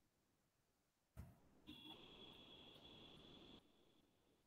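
Near silence. About a second in a faint click sounds, then a faint hiss with a steady high whine runs for about two seconds and cuts off suddenly.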